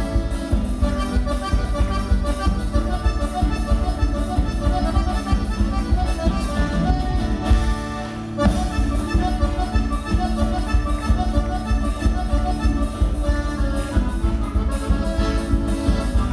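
Live folk band playing an accordion-led chamamé with a steady bass beat for dancing. A little past halfway the music briefly thins and the bass drops out, then it carries on.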